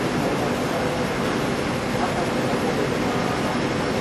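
Through-hole PCB auto insertion machine running: a steady, dense mechanical noise that keeps an even level throughout.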